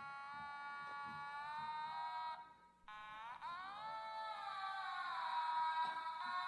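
Two long held musical notes, full of overtones, with a short break about two and a half seconds in; the second note swoops up and back down, then settles into a steady tone.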